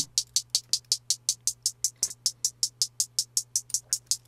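Programmed closed hi-hats from a drum machine ticking in a steady run of about eight hits a second, played through Ableton's Frequency Shifter in Shift mode as its shift frequency is turned up. A faint steady low hum sits underneath.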